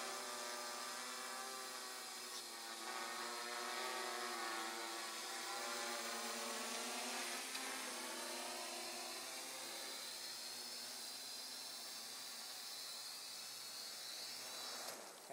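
Quadcopter's electric motors and propellers buzzing steadily as it descends slowly under autopilot to land. The pitch of the hum wavers as the motors adjust their speed.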